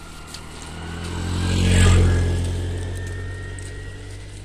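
A motorbike passing by: its engine drone grows louder to a peak a little under two seconds in, then fades away.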